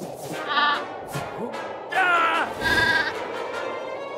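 Cartoon characters' wordless cries over background music: a short call about half a second in, a falling cry about two seconds in, then a held, wavering note near the three-second mark.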